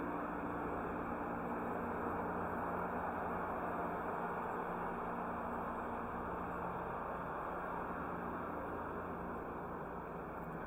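Steady outdoor ambience of a parking lot: an even rush of noise with a faint low hum that fades out about two-thirds of the way through.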